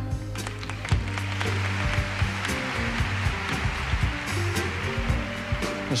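Concert audience applauding over the backing band's sustained instrumental vamp.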